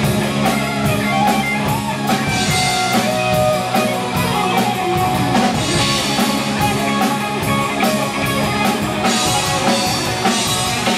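Live rock band playing an instrumental passage: distorted electric guitars, bass guitar and a drum kit keeping a steady beat, loud and continuous.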